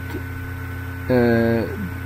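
Steady low electrical mains hum on the recording, with a man's drawn-out hesitation sound, a held 'uhh' that trails off, a little past the middle.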